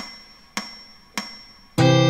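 Metronome count-in clicks, about one every 0.6 seconds, three in all, each with a faint high ring; on the next beat, near the end, loud sustained chords of the accompaniment come in.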